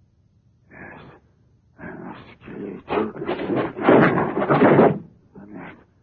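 A man's wordless growls and gasps in several short bursts, building to the loudest stretch about four seconds in.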